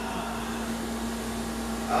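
Steady low hum with a faint even hiss: room tone.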